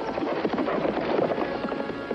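Hoofbeats of horses galloping off, a dense, rapid run of hoof strikes.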